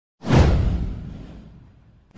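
A whoosh sound effect with a deep boom under it, from an intro animation. It sweeps in suddenly about a quarter second in, falls in pitch and fades away over about a second and a half.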